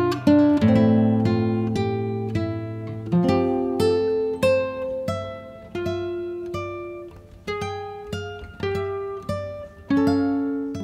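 Background music: an acoustic guitar playing slow plucked notes and chords, each ringing out and fading before the next.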